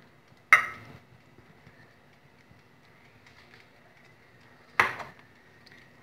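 Two sharp clinks against a glass baking dish, one about half a second in and one near the end, each with a short ringing tail.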